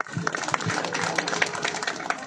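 Crowd applauding: many hands clapping at once in a dense patter that thins out near the end.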